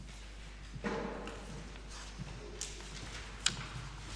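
Faint, indistinct talk and room noise over a steady low hum, with two sharp taps or clicks in the second half, the later one louder.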